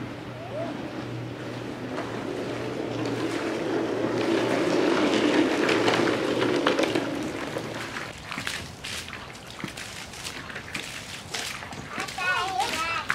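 Water from a garden hose running into a tandem kayak's hull, building to its loudest around the middle and then tapering off, followed by scattered splashes as the hose sprays loose.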